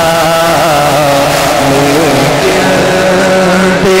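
A man singing an Urdu naat into a microphone, drawing out long, wavering, ornamented notes with melodic turns between the words, over a steady low drone.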